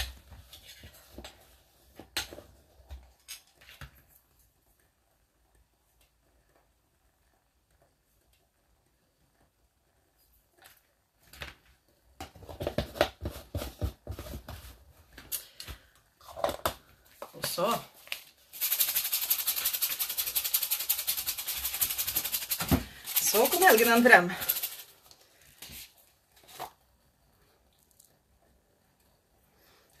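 A dense, rapid rattle lasting about four seconds, the loudest sound here, with short murmurs of a voice just before and after it and light handling clicks.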